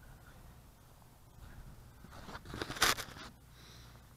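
Low wind rumble on the microphone, then a close rustling scrape that builds over about a second and peaks near the end, as the camera is handled and moved.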